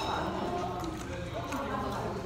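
Indistinct chatter of voices with scattered sharp clicks.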